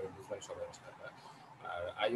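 Quiet, halting speech heard over a video call, with a drawn-out voiced sound near the end.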